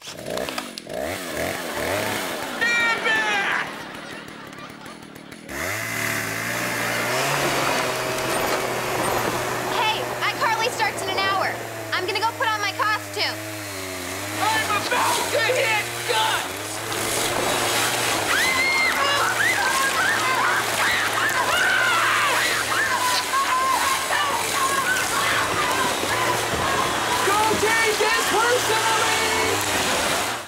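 Chainsaw running steadily from about five seconds in, its motor note dipping now and then as it works.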